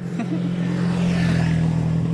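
Motorcycle engine running with a steady hum that slowly grows louder.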